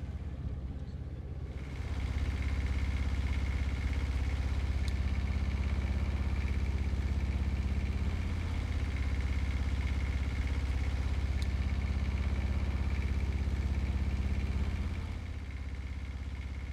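The all-diesel Crack Pro mastic melter's engine running steadily, with a faint high whine above the drone. It gets louder about a second and a half in and drops back a little before the end.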